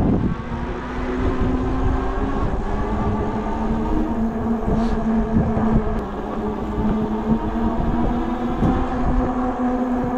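Electric bike running at speed on pavement: the hub motor and 20 x 4 inch knobby fat tyres give a steady hum, under a rough low rumble of wind on the microphone.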